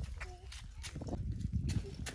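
A toddler's plastic sandals clip-clopping on asphalt, a quick series of light footsteps.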